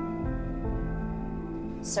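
Soft, slow background music of long held notes from a drama's score.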